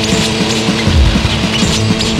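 Instrumental passage of a loud rock song: distorted electric guitar holding a sustained note over drums keeping a steady beat.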